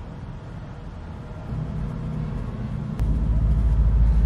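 Low vehicle rumble heard from inside a car. It jumps louder suddenly twice, about halfway through and again near the end.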